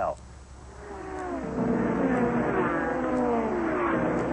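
Race car engine. It grows louder over the first second and a half, then runs on with its pitch falling slowly and steadily.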